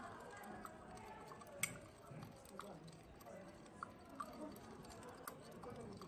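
Glass stirring rod clinking against a glass beaker while sugar is stirred into water: faint, scattered clinks, the sharpest about one and a half seconds in, with a few more later.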